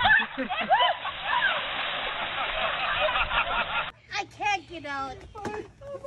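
Women shrieking and laughing in short rising-and-falling squeals over a steady wash of noise, likely surf. About four seconds in, the sound changes abruptly to other people's voices and laughter.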